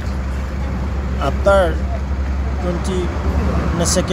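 Low, steady rumble of road traffic behind a man's voice, easing off about three seconds in.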